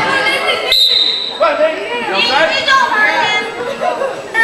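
A referee's whistle gives one short steady blast just under a second in, over the chatter of spectators' and players' voices in a gym.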